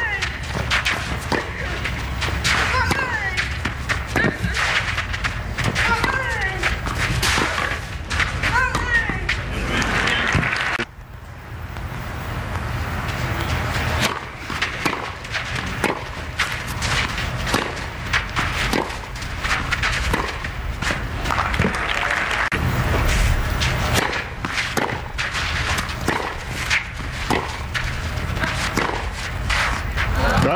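Tennis rallies: repeated sharp racket strikes on the ball, with short vocal grunts from the players on their shots. The sound drops briefly about eleven seconds in.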